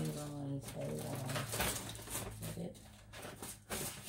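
A person's low, held hum with a few short handling noises.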